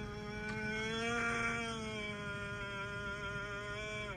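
A man bawling in one long, drawn-out wail that rises a little in pitch, then sinks slowly and breaks off at the very end.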